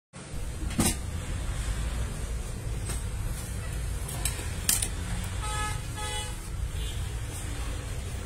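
Low steady rumble of street traffic, with a vehicle horn tooting twice, briefly, about five and a half seconds in. A few sharp clicks sound over it.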